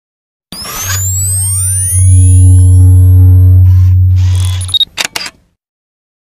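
Logo intro sound effect: a burst of noise with many rising sweeping tones over a loud, deep, steady drone, ending in a few sharp clicks about five seconds in before it cuts off.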